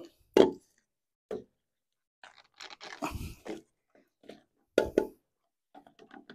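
Corrugated plastic RV sewer hose crinkling as it is stretched out and handled, with irregular short crunches and clicks from its plastic fittings against the Y connector, busiest in the middle and again near the end.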